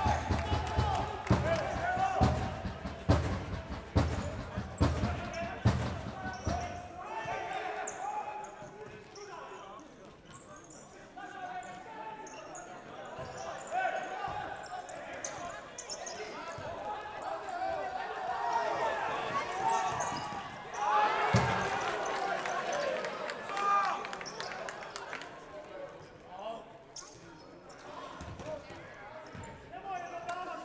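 Futsal match play in an echoing sports hall: a run of dull thuds in the first seven seconds, then scattered ball kicks, with players and spectators shouting and calling throughout.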